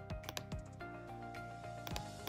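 A few sharp computer keyboard and mouse clicks, several in the first half-second and one near the end, over steady background music.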